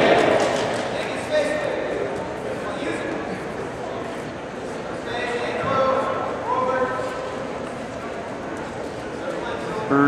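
People's voices echoing in a gymnasium around a wrestling mat, with calls standing out about five to seven seconds in.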